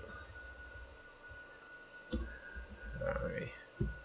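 A few faint clicks of a computer keyboard during text editing: a sharp one about two seconds in and another near the end, with a short indistinct sound about three seconds in. A faint steady high tone runs underneath.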